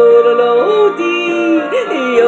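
A woman yodeling over a karaoke backing track. She holds a long note, steps down to a lower one about a second in, and flips quickly up and back down near the end.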